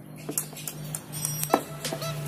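A few sharp clicks of a kitchen knife tip jabbing into the side of a plastic paint bucket to start a hole, the loudest about one and a half seconds in, over background music.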